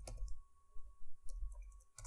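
A few scattered computer keyboard keystrokes, sharp separate clicks as code is typed, with a faint steady whine underneath.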